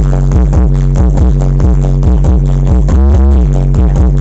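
Loud electronic dance music with a heavy, steady bass beat, played through a large carnival sound system of stacked speaker cabinets. A short swooping synth glide comes a little after three seconds in.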